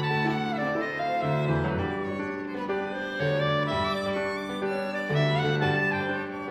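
Violin, clarinet and piano trio playing live, with low piano notes changing about once a second under the melody.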